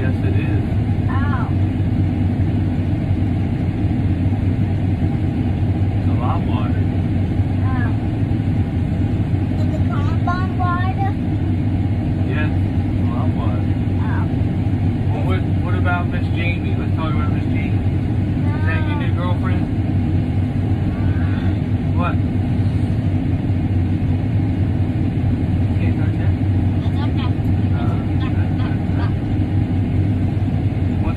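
Farm tractor's diesel engine running at a steady speed, heard from inside the closed cab as an even low drone.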